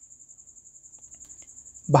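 A cricket's steady, high-pitched trill, evenly pulsed, carrying on without a break.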